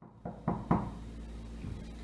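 Three quick knocks of a fist on a wall, the first one faint.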